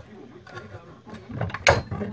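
Bench bottle capper being worked after crimping a crown cap onto a bottle: a low, rattling mechanism with one sharp click about three-quarters of the way through.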